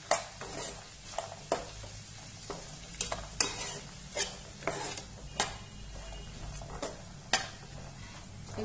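Metal spatula stirring and scraping mixed vegetables in a frying pan, with irregular scrapes and clicks about every half second over a faint sizzle.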